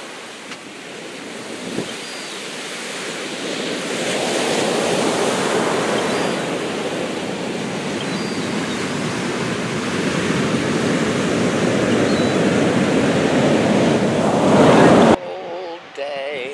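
Ocean surf breaking and washing up on a sandy beach, a steady rushing wash that swells louder toward the end and then cuts off suddenly.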